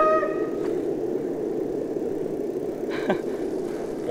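Steady rushing wind and road noise from riding a bicycle along a paved path, heard on the camera's microphone. A brief tone sounds at the very start.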